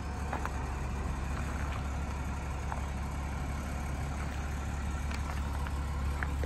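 The Jeep Grand Cherokee's engine idling: a steady low rumble with no change in pitch, under a few faint ticks.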